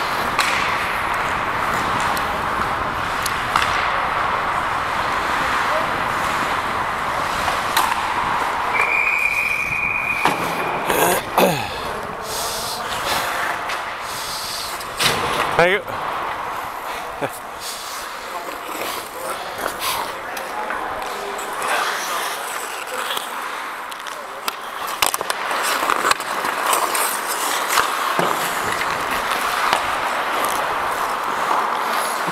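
Ice hockey play heard up close on the ice: skate blades scraping and carving the ice in a steady hiss, with sharp knocks of sticks and puck, loudest around eleven and fifteen seconds in. A short steady high tone sounds about nine seconds in.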